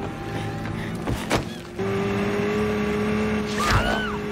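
Cartoon speedboat engine running, a steady drone that comes in louder a little under two seconds in, mixed with rock theme music and a few sharp knocks.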